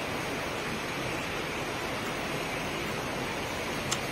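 Steady, even rush of a rocky stream's flowing water, with a single short click near the end.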